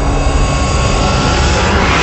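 Intro sound effect: a loud, jet-like rushing noise over a deep rumble, swelling brighter toward the end.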